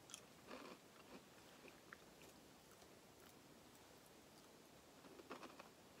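Faint chewing of a crunchy caramel-coated puffed-wheat snack: a few soft crunches in the first couple of seconds and again about five seconds in, otherwise near silence.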